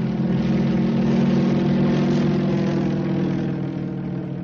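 Radio-drama sound effect of a propeller airplane engine droning steadily. It swells to its loudest about a second in and then slowly eases off.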